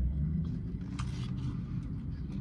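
Steady low rumble of a car running, heard from inside the cabin, with a brief crackle about a second in.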